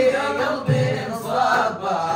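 Group of men chanting a Sudanese madih (praise song for the Prophet) together, to the beat of hand-struck frame drums, with a deep drum stroke about a third of the way in.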